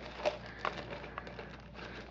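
Faint rustling and crinkling of a thin plastic bag, with a few light clicks, as a small plastic container is slipped into it.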